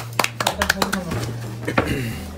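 Sharp clicks and taps of a toy car's plastic blister pack and card being handled on a tabletop: several quick ones in the first second and a couple more near the end.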